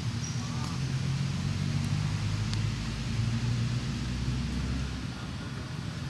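A motor vehicle engine running, a low steady hum that wavers slightly in pitch, its deepest part dropping away about five seconds in.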